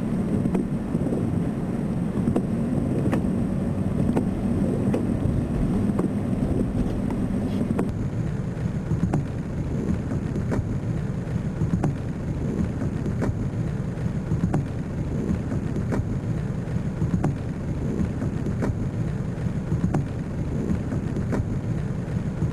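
A steady low rumbling noise with faint scattered ticks, and a thin high whine that drops out about eight seconds in.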